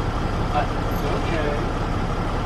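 Steady low rumble of an idling vehicle engine, with faint voices in the background.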